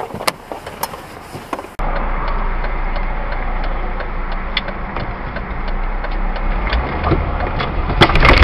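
Steady car engine and road noise, as a dashcam records it, starting abruptly about two seconds in, with a few light clicks over it. Before that there is only a quieter background with scattered clicks.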